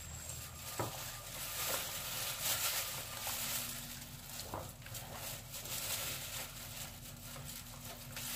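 A metal spoon scooping and scraping a grated taro mixture in a stainless steel bowl, with soft rustling and a couple of light clicks of the spoon on the bowl.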